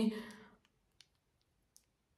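A few faint, sparse clicks of plastic mascara tubes and wands being handled, with near silence between them.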